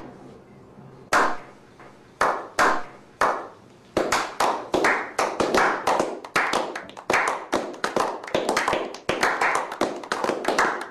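A slow clap by a small group: single hand claps spaced about a second apart, then from about four seconds in more hands join and the clapping quickens into steady applause of several claps a second.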